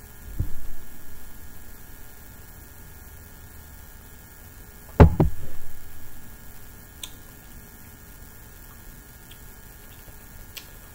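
Steady mains hum, with a dull thump about half a second in and a louder, sharp double knock about five seconds in.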